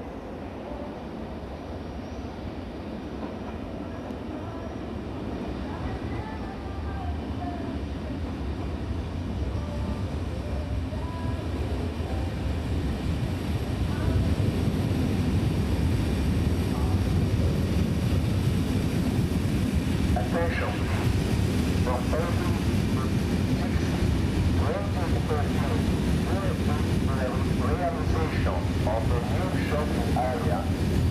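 Double-deck push-pull passenger train approaching and running close past, its rumble on the track growing steadily louder over the first half, then staying loud once it is alongside.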